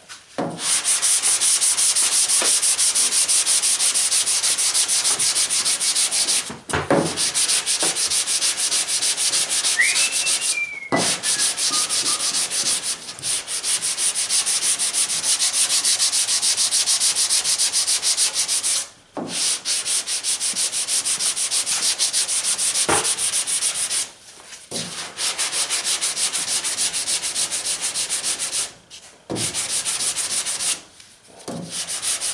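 Hand block sanding of FeatherFill G2 polyester primer on a car hood: long sanding blocks dragged back and forth make a continuous dry, scratchy rasp of quick strokes. The rasp stops briefly a few times, about 7, 11, 19, 24 and 29 seconds in.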